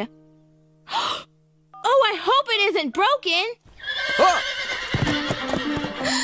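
A cartoon horse gives a short noisy blow about a second in, then whinnies in a quick run of wavering calls. After that comes a busier noisy stretch with hoofbeat-like knocks under background music.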